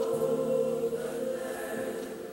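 Gospel choir singing a long held note, easing off near the end.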